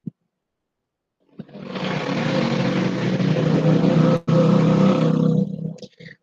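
A loud, steady rushing noise with a low hum, like a running engine. It starts about a second and a half in, with a brief dropout past the middle, and stops just before the end.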